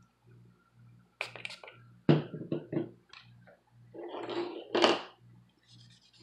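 Small computer parts and a plastic pry tool handled on a hard tabletop: a sharp knock about two seconds in, a few lighter clicks, a rubbing scrape about four seconds in, and another sharp knock near five seconds.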